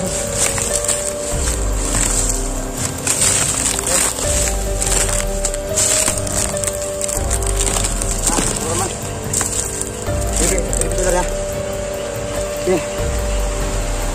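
Background music with held notes over a pulsing low bass, laid over a steady high hiss of rain.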